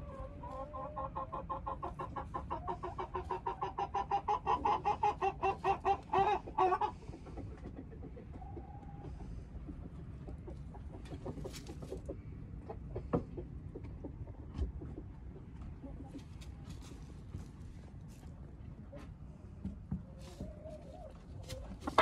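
A chicken clucking in a fast, steady run of short calls that grows louder over about six seconds and then stops, followed by faint scattered clicks.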